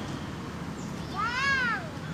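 A single high-pitched call about halfway through, rising and then falling in pitch over roughly half a second.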